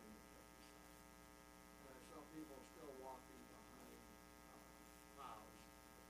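Faint steady electrical mains hum in the sound system, with faint, distant speech coming through twice, about two seconds in and near the end.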